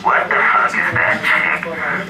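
A man's voice shouting through the club PA, loud and distorted, rising in pitch right at the start, just before the band comes in.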